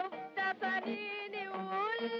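A woman's voice singing over instrumental accompaniment, Middle Eastern in style, from an old film soundtrack: a few short notes, then a longer note that wavers and rises.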